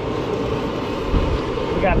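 A steady low rumble of background noise with no clear strokes or events.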